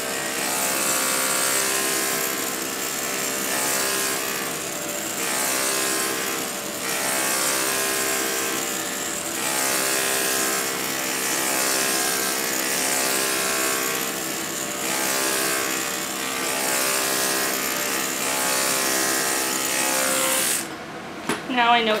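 Corded electric grooming clippers running with a steady buzz, swelling and easing every couple of seconds as the blade is drawn down through a dog's ear fur. The motor cuts off suddenly near the end.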